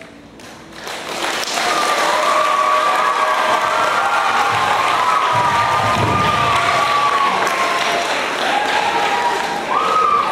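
Audience applause and cheering, rising about a second in and holding steady, with high shouted voices over the clapping.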